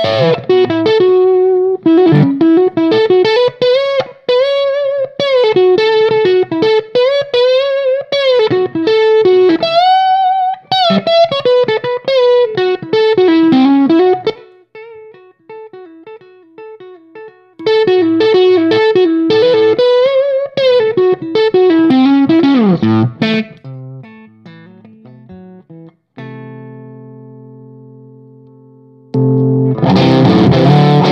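Electric guitar, a red Gibson SG, played through a Wax and Tape MOSFET boost pedal into a Dr. Z tube amp: loud, driven lead lines with bent and vibrato notes. About halfway through it drops to a much quieter, cleaner passage with the pedal bypassed, then the boosted phrases return. Near the end a chord is left to ring out.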